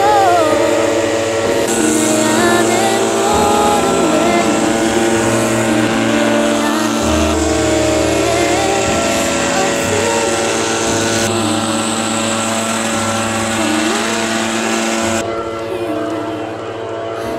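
Backpack leaf blower engine running steadily as it blows snow off a tent, under background music.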